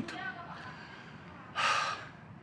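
A man draws one audible breath, a short noisy intake lasting about half a second near the end, in a pause in his talking.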